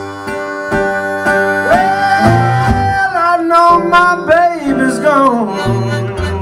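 Blues harmonica and slide guitar on a resonator guitar playing an instrumental break together. Held notes begin a couple of seconds in and bend and slide in pitch over plucked bass notes.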